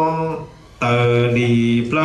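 A man singing a Hmong txiv xaiv funeral chant in long, held, slightly wavering notes. He breaks off briefly just under half a second in, then takes up a new long note.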